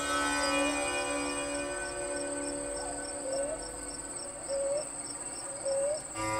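Crickets chirring: a steady high buzz with a regular chirp about three times a second, over a faint drone of music with a few short sliding notes.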